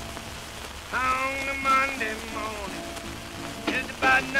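Old folk recording starting up: a steady hiss and crackle of record surface noise, with a sliding melody line entering about a second in and a sharp click near the end.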